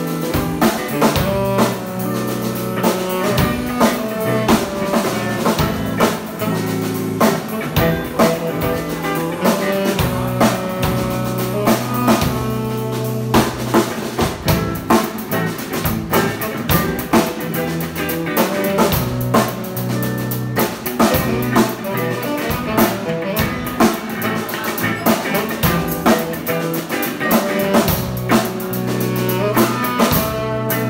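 Live band of electric guitar, electric bass, drum kit and saxophone playing an instrumental blues-jazz number, the drums keeping a steady beat under held bass notes.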